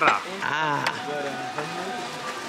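Background voices of people talking around a restaurant table, with a short sharp click a little under a second in.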